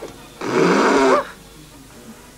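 A cartoon elephant blows a blast of air through its trunk as a sound effect: a single loud, pitched blast lasting just under a second, strong enough to send its opponent flying.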